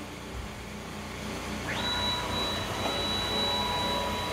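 CNC router axis drive motors whining as the spindle head jogs across the table: a high steady whine comes in about two seconds in, rising quickly to pitch and then holding. Underneath runs the steady hum of the small vacuum compressor holding the aluminium plate down.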